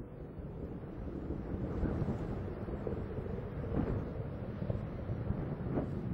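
Steady low rumble of Space Shuttle Atlantis's solid rocket boosters and main engines as the shuttle climbs, growing a little louder in the first second.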